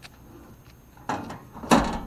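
Two short scuffing knocks, the second one louder, over a faint quiet background.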